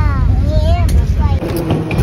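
Airliner cabin noise on the runway after landing: a steady low drone, with a child's high voice over it. It cuts off suddenly about one and a half seconds in, leaving a quieter, more open background.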